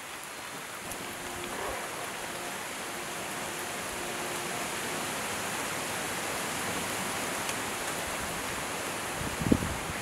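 Split firewood burning in the firebox of a wood-fired brick kiln, a steady hiss with faint crackles that grows a little louder as the flames catch. There is a short knock near the end.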